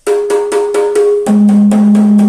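RBDrums Compactline rototoms (6-inch and 8-inch) struck in a quick run of about six hits a second. The first second rings on a higher note, then the strikes move to a lower, louder note that rings on.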